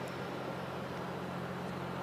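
A steady low machine hum over an even hiss, like an engine or motor running without change.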